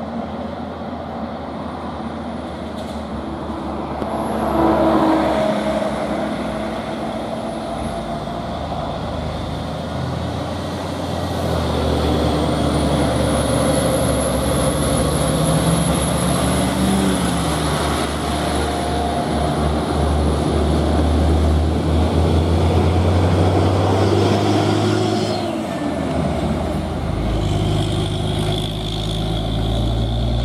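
Diesel engine of a FAW JH6 tractor-trailer hauling cast iron, labouring uphill. It grows louder as the truck draws near and passes, with its engine pitch rising and falling and a thin high whine above the rumble.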